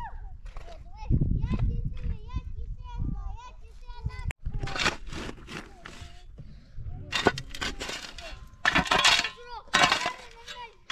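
Steel shovel blade scraping and digging into dry, stony soil, several gritty strokes in the second half.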